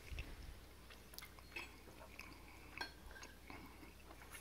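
Faint chewing of a mouthful of fried Spam, with a few small soft clicks over a low steady hum.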